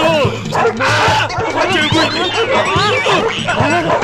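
German Shepherd dogs barking, many short barks in quick succession, over film background music.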